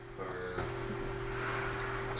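A steady low hum with faint background hiss, after a brief spoken word at the start.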